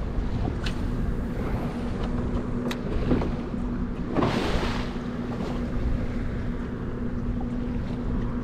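A boat's motor humming steadily with wind rumbling on the microphone and water slapping the hull; a louder splash of water comes about four seconds in.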